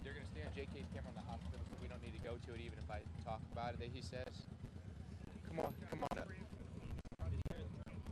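Indistinct voices of people talking at a distance, over a steady low rumble.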